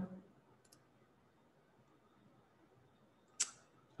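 Mostly quiet room tone, with a faint computer-mouse click under a second in and a brief, louder hissing sound near the end.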